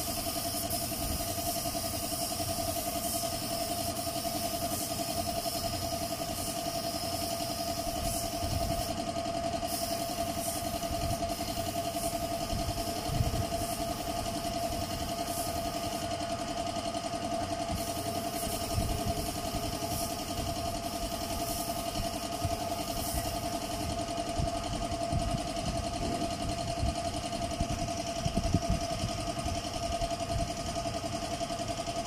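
An air-fed paint spray gun hissing over the steady drone of a running motor, the hiss cutting out briefly a few times as the trigger is released, with a few sharp knocks.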